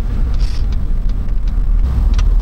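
Steady low rumble of road and wind noise from a pickup truck towing an Airstream travel trailer along the road.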